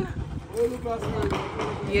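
Shovel working wet mortar mixed on the bare ground, with low knocks and scrapes as the blade turns and chops the mix. A voice is talking faintly underneath.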